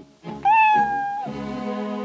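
A cartoon cat meowing once, a single long, high call starting about half a second in, over background music.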